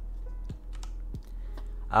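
A few scattered soft clicks from a computer keyboard over a steady low hum.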